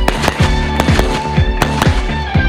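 A quick string of shots from an AK-pattern rifle, fired rapidly one after another, under background rock music.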